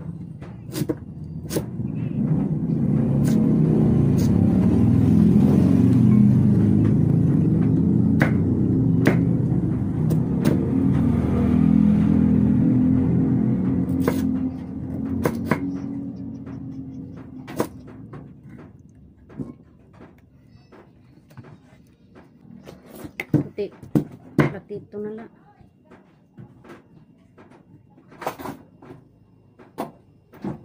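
Kitchen knife chopping a purple yam on a wooden chopping block, with sharp irregular taps of the blade on the wood. A loud low rumble swells through the first half and fades away by about two-thirds of the way in.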